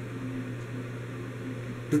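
Steady low hum with a faint even hiss: background room noise in a pause between words, with a man's voice starting again at the very end.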